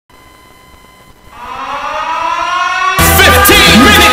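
Show intro: a siren-like tone rises in pitch and swells from about a second in. About three seconds in, loud music with a heavy bass beat cuts in.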